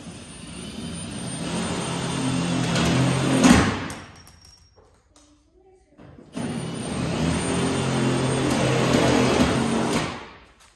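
Power drill driving screws into the sheet metal of a new quarter panel, in two runs. The first whine grows louder over about four seconds and ends in a sharp snap; after a short pause a second run lasts nearly four seconds.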